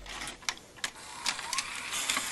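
VHS-style video-tape transition sound effect: a few sharp mechanical clicks and a short rising whine over tape hiss, like a VCR loading a cassette into play.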